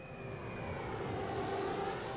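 Jet airliner heard from inside the cabin: a steady rush of engine and air noise with a faint high whine.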